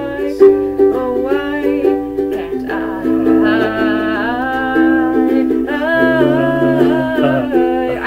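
Ukulele strummed in a steady rhythm of chords, with a woman's voice singing long held notes over it from about three seconds in.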